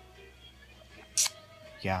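A film soundtrack playing faintly from a television, with a short sharp hiss a little over a second in.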